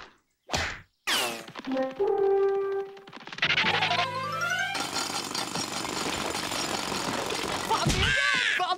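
Cartoon score with sound effects: a sharp whack about half a second in, a falling whistle, a few brass notes and a quick rising run, then a steady fast clattering rush of cartoon shovel-digging under the music for the last three seconds.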